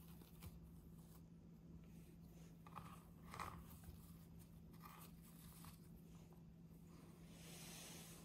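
Faint rustling and soft scraping of a satin ribbon being untied and slid off a small cardboard gift box, loudest a little past three seconds in, with a soft hissing swell near the end, over a low steady hum.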